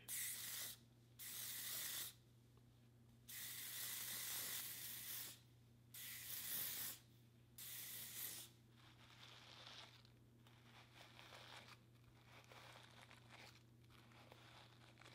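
Aerosol can of Ouai Medium hairspray spraying onto hair in five hissing bursts, from about half a second to two seconds long, over the first eight seconds or so. After that comes a faint rustle of a paddle brush smoothing the sprayed hair back.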